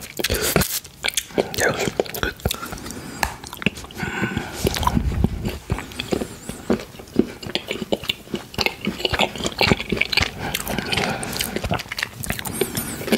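Close-miked chewing of a bitten-off piece of milk chocolate: wet mouth sounds with many small irregular clicks and smacks.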